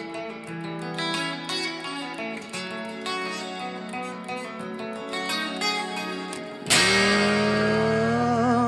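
Guitar picking a flowing run of single notes in an instrumental passage. Near the end a loud chord comes in under a long held note that wavers in pitch.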